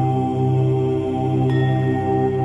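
Om chant: a low voice holding one steady pitch over a sustained musical drone. A faint high ringing tone comes in about a second and a half in.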